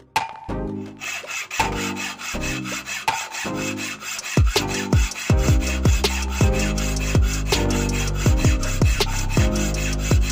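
A flat hand file scraping in repeated strokes against a metal sewing-machine handwheel, filing it down to fit the hand crank. Background music with a steady beat plays underneath.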